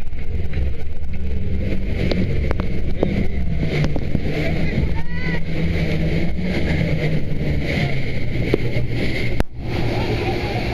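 Speedboat engine running steadily under power, with water rushing past the hull.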